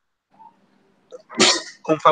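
A person sneezing once, a sudden loud burst of breath noise about one and a half seconds in, after a short silence.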